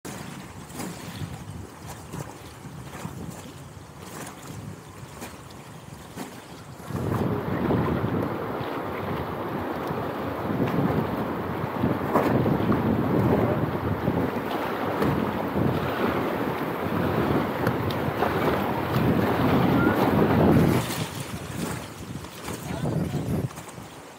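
Fast river water rushing around an inflatable raft, with wind buffeting the microphone. About seven seconds in it turns suddenly much louder and choppier, easing off near the end.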